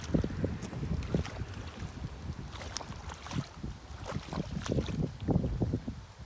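A hoe sliding and scraping through wet mud while a rice-paddy levee (畦) is plastered and smoothed flat, with a run of irregular wet slaps and squelches.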